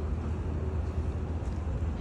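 Steady low background rumble of an urban outdoor space, with no distinct sound standing out.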